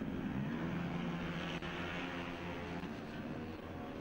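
Several four-stroke racing scooter engines running steadily as the bikes ride through the corners, a drone with a few held pitches and a faint rushing haze.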